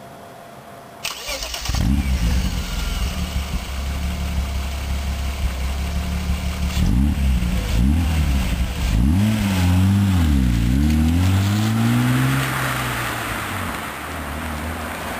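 BMW E36 325i's 2.5-litre straight-six starts about a second in and settles into an even idle. It is then blipped several times, the pitch rising and falling quickly with each rev.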